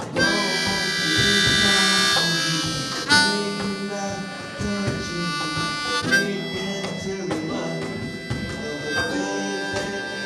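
Harmonica solo over strummed acoustic guitar, the harmonica holding long notes that change about every three seconds.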